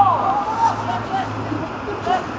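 Footballers shouting and calling to one another across the pitch during play, several raised voices overlapping.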